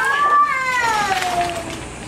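One long, high-pitched drawn-out cry that rises a little, then slides down in pitch for about a second and a half before fading out.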